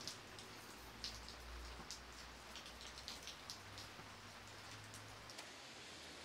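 Light rain falling: a faint steady hiss with scattered drops ticking sharply, and a low rumble underneath.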